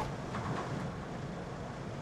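Steady, low background ambience with no distinct events.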